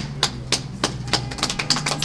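A quick, irregular run of sharp taps or clicks, about a dozen in two seconds, over a steady low hum.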